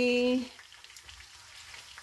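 A drawn-out spoken vowel ends about half a second in, leaving a faint, steady sizzle of food cooking on the stove.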